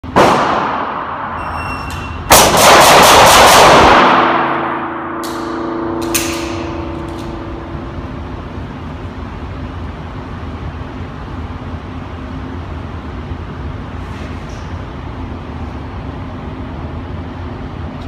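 A loud sound at the very start, then a shot-timer beep and, just under a second later, six rapid pistol shots from an STI Trubor open race gun, about a fifth to a quarter of a second apart, knocking down a six-plate steel rack. The steel rings for a few seconds afterwards with two more clangs, then only a steady low hum remains.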